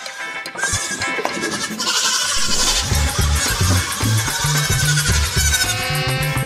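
Goat kids bleating over music; a deep bass beat comes in about halfway through.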